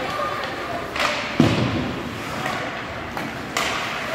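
Ice hockey play heard in an echoing rink: a sharp crack about a second in, a heavy low thud just after it, and another crack near the end, over spectators' chatter.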